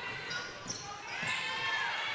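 Court sound of a basketball being dribbled on a hardwood floor in a large indoor hall, with high sneaker squeaks, one of them drawn out in the second half.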